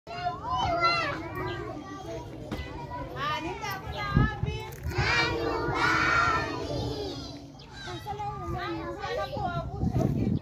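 A crowd of young children's voices chattering and calling out together, many high voices overlapping, with a louder stretch about five to seven seconds in.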